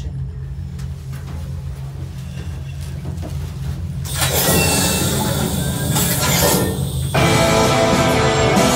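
Played-back spaceship airlock effects: a steady low rumbling drone, then about four seconds in a loud rushing hiss as the airlock door opens. Music with a rock sound starts near the end.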